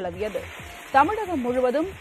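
Heavy rain falling with a steady hiss, and a voice speaking over it from about a second in.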